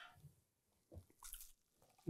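Near silence, with a few faint soft clicks and squishes as a fork breaks into a freshly fried crab cake.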